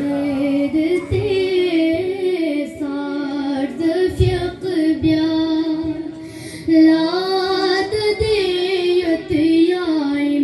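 A boy singing a manqabat, a devotional praise poem, solo into a microphone: a high child's voice holding long, ornamented notes with short breaths between phrases.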